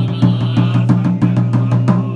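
Buddhist sutra chanting held on a steady low monotone, starting abruptly, with a large temple drum beaten in rapid, even strokes under it.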